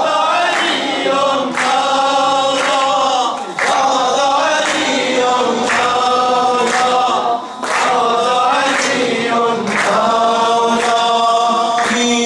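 Maddahi, Shia devotional singing: male voices chanting a melody together, with short breaks between phrases, over a sharp steady beat about once a second.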